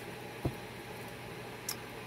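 A tarot card deck being handled: one soft low thump about half a second in and a faint light click near the end, over a steady low room hum.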